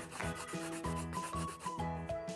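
A scratchy rubbing sound of a brush-stroke colouring effect, over light background music with a steady low beat and a few short rising notes.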